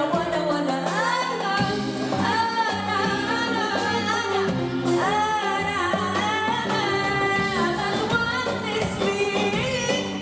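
A woman singing an Arabic tarab song live into a microphone, her voice bending and gliding in long held lines, backed by a band with keyboard, bass and drums.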